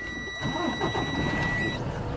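Low steady rumble of an idling engine heard inside a truck cab, with a steady high-pitched whine that cuts off near the end.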